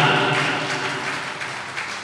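A pause in a man's speech over a public-address microphone, leaving the hall's background noise, which slowly fades.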